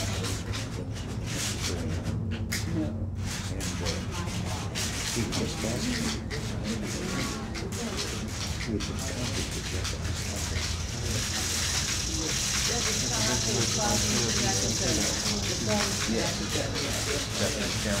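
Quiet, indistinct conversation between two people, over a steady low hum. A faint high hiss joins in about eleven seconds in.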